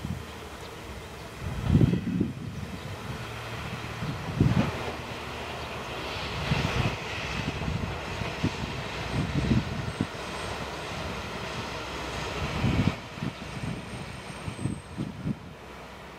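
Diesel railcar pulling slowly into the station, its engine running steadily at low speed. Gusts of wind buffet the microphone several times.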